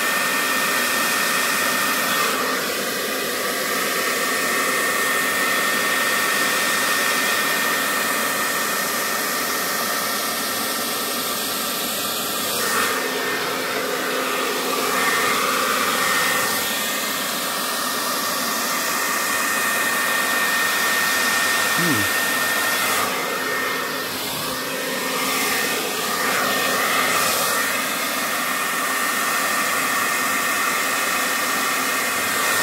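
Handheld hair dryer running continuously, blowing air across wet acrylic paint on a canvas to spread it. A thin steady whine rides over the rush of air, which swells and dips slightly as the dryer is moved about.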